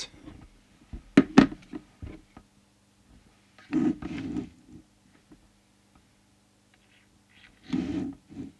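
Handling noise on a workbench: two sharp knocks about a second in, then a short burst of rustling and shuffling around the middle, over a faint steady hum.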